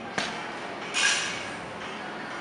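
A sharp knock, then about a second in a short metallic clink that fades, from a loaded barbell and its plates.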